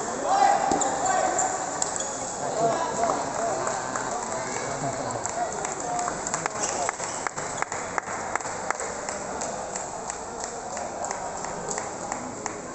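Table tennis ball clicking back and forth off the paddles and table in a rally, a string of sharp clicks mostly in the second half, over voices chattering in the hall.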